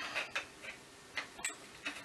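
Light metallic clicks and ticks, a handful spaced irregularly, as a slim metal leg of a small tabletop telescope tripod is pulled out of its mount and handled.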